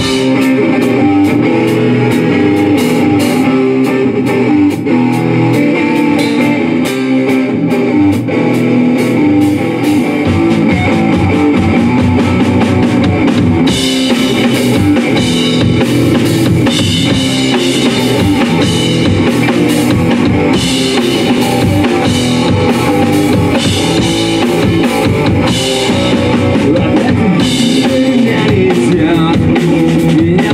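Live rock band playing without vocals: electric guitar, bass guitar and drum kit with steady cymbal hits, coming in together at full volume at once. The bottom end deepens about ten seconds in.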